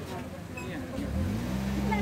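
Busy street ambience with people talking nearby. About a second in, a motor vehicle's engine comes in close by and runs with a steady low hum.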